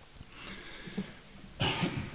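A man coughs briefly about one and a half seconds in, after a quieter stretch.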